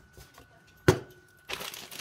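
Plastic food storage containers being handled on a kitchen counter: one sharp plastic click a little under a second in, then rustling and knocking of the plastic near the end.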